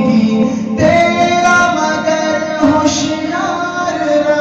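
A man singing an Urdu hamd (devotional hymn to God) into a microphone, holding long drawn-out notes that step up and down in pitch.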